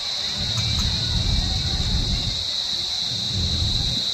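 Outdoor ambience with a steady high-pitched drone and a low rumble that swells twice, with no voices heard.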